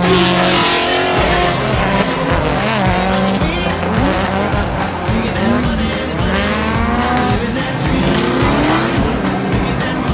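Drift cars' engines revving up and down repeatedly as they slide, with tyres squealing, under background music with a steady beat.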